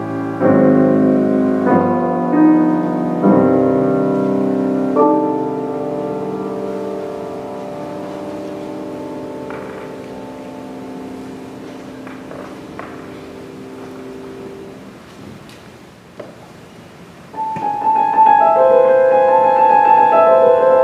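Shigeru Kawai grand piano: a few chords are struck, then a final chord is held and slowly dies away over about ten seconds. After a short lull, loud bright chords start again near the end.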